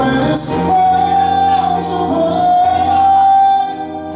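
Live singing with band accompaniment in a slow song. A long note is held for about three seconds, stepping up in pitch partway through, before the phrase ends near the close.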